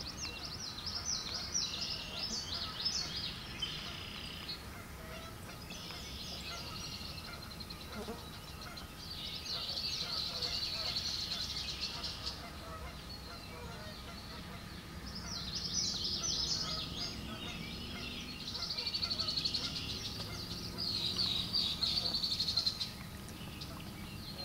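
Birds calling in repeated bouts of high-pitched chatter and trills, each lasting one to three seconds with short gaps between, over a low steady rumble.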